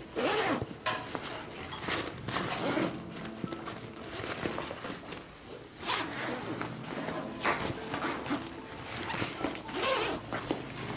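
Expansion zipper on an Eagle Creek Load Hauler ripstop duffel being pulled open in a series of short, irregular pulls, with the fabric rustling as the bag is handled.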